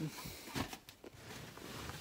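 Quiet cab of a parked truck, with a few faint clicks and a soft low knock about half a second apart near the middle, typical of a hand-held phone being moved.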